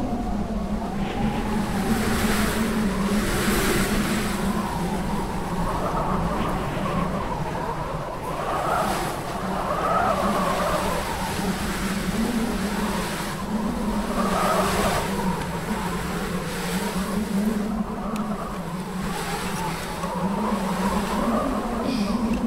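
Wind howling and gusting, rising and falling every second or two, over a steady low drone.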